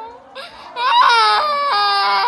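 A high-pitched wailing cry that starts about a second in, after a brief lull. It is held on long, steady notes that step down in pitch.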